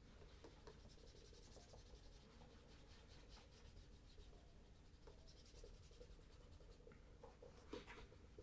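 Faint rubbing of a cloth over the leather upper of a Cheaney Welland oxford during polishing, in short repeated strokes, with a light tap near the end.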